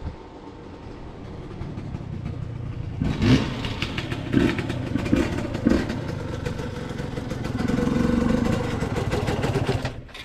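TM 250 two-stroke single-cylinder dirt bike engine coming closer and getting louder, then revved in several quick throttle blips about three seconds in. It runs louder and steadier as the bike pulls up, then drops off near the end.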